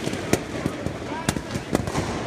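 Balloons popping one after another, burst by people with nails on sticks: several sharp pops at irregular spacing.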